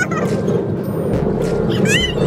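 High-pitched screams and squeals from riders on a spinning fair ride, one trailing off at the start and another rising near the end, over a steady rush of ride and wind noise.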